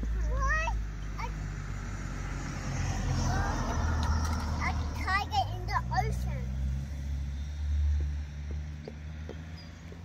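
A low rumble runs throughout, with a few brief, high-pitched bits of a child's voice near the start and about five seconds in.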